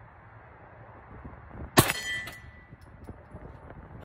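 A single Glock pistol shot a little under two seconds in, followed by a metallic ringing that dies away within about a second.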